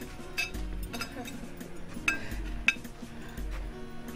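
Cutlery clinking against a plate about four times, sharp and ringing, over background music with sustained tones and a slow low pulse.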